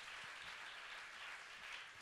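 Faint, steady applause from a congregation during a pause in preaching.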